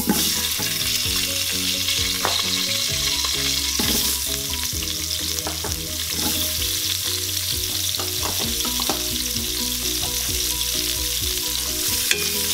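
Chopped onion, carrot and celery sizzling steadily in hot oil in an Instant Pot's stainless steel inner pot on the sauté setting. Scattered light clicks come as the vegetables are tipped in and stirred.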